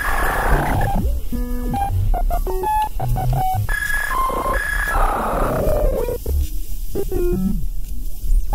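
Experimental electronic music from physical-modelling and modular synthesis: short steady tones that switch on and off abruptly, hissing swells that slide down in pitch, scattered clicks and a low rumble underneath, growing sparser near the end.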